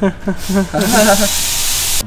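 A loud, even hiss comes in about a second in and cuts off suddenly, with a voice under it at the start.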